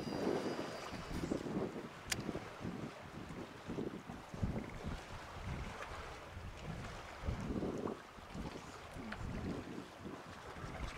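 Wind buffeting the microphone in irregular gusts over choppy water lapping against a concrete seawall, with a single sharp click about two seconds in.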